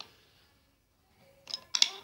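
A few short, sharp clicks and clinks about one and a half seconds in, from wooden toy trains being handled on wooden track.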